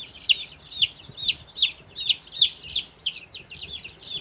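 Young chicks peeping in a brooder: a steady run of short, high calls, each falling in pitch, about three a second.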